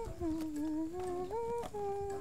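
A woman humming a slow folk-style tune, holding each note and gliding down, then back up, between them.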